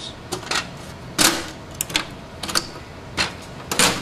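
A section of a Xanté Impressia digital press being opened and handled: a scattered series of plastic clicks and knocks, the loudest about a second in.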